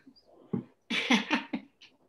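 A woman laughing in short, choppy bursts over a video-call link.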